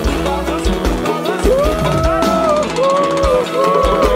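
Live Bahian pagode band playing: a heavy kick drum and bass beat with snare hits. From about a second and a half in, a lead melody comes in with notes that bend up and down.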